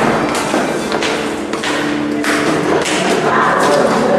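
A loud, irregular jumble of thumps and taps, with steady low tones of music or voices underneath.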